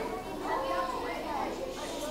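A child's voice, fainter than the adult speech around it, asking a question amid the stir of a room full of children.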